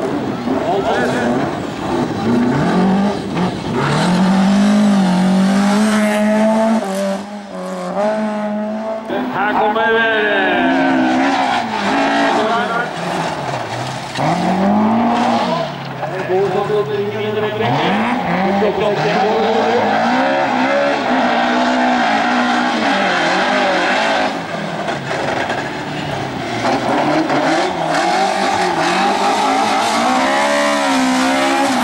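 Race car engines run hard under load, their revs climbing and dropping again and again through gear changes and corners.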